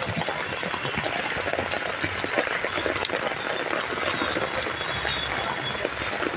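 Heavy rain pouring down onto a wet street, a steady hiss of falling water with countless small patters of drops.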